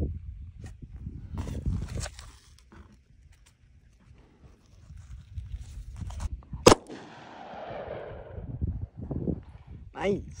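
A single 9mm gunshot, a Liberty Civil Defense round clocked at about 2020 fps, about two-thirds of the way in, followed by an echo that fades over about a second and a half.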